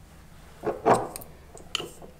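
Two metal teaspoons clicking and scraping against each other as jam is pushed off one spoon onto pastry cups in a metal muffin tin: a few short, light taps, the loudest just under a second in.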